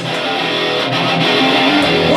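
Live metal band playing, with electric guitars strumming out front and little deep bass underneath.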